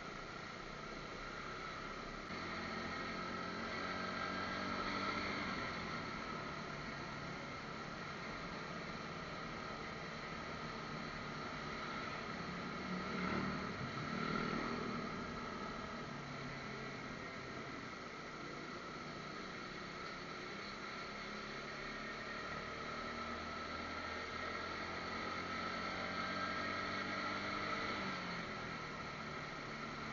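Motorcycle engine running with wind and road noise, picked up by a budget helmet-mounted action camera's built-in microphone. The engine note rises and falls with speed, swelling briefly about halfway through.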